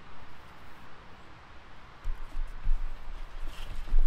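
Handling noise: a foam-padded SAM splint and a hoodie rustling as the splint is moved off the shoulder and brought forward, with a low rumble from clothing brushing the clip-on microphone. The rumble picks up about halfway through and is heaviest near the end.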